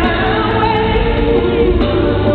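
A woman's soul lead vocal singing live through a microphone over full band accompaniment, holding wavering notes.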